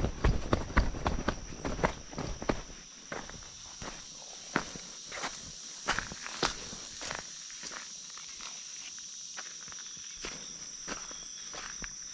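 Footsteps in sandals on a dirt trail and then loose pebbles, quick and loud for the first few seconds, then slower and lighter. A steady high insect trill, as of crickets, runs underneath.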